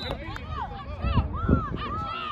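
Several people shouting and calling out across an open field, the words not clear, with a few low thumps around the middle.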